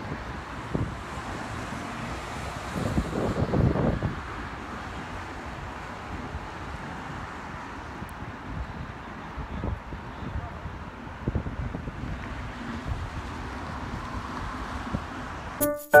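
Wind buffeting a phone's microphone over steady outdoor background noise, with the loudest gusts about three to four seconds in. Music with distinct pitched notes starts right at the end.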